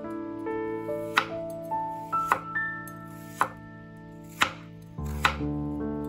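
A stainless Kai chef's knife slicing a carrot on a wooden cutting board: about six crisp knocks of the blade through the carrot onto the board, roughly one a second. Soft piano-like background music plays underneath.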